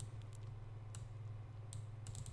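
A few sharp, isolated computer mouse clicks, the clearest about a second in and near the end, over a faint low steady hum.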